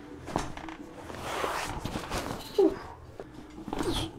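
Clothing rustling and bodies shifting on a padded chiropractic table as a patient is wrapped into a hold for an upper-back adjustment, with a single sharp click near the end.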